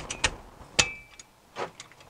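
A metal wrench clicking and clinking against the rear differential as it is fitted onto the drain plug. About five irregular sharp clicks, the loudest a little under a second in with a short metallic ring.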